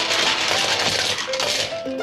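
Small plastic toy buses rolling down a plastic spiral ramp with a continuous clattering rattle that stops near the end, over background music.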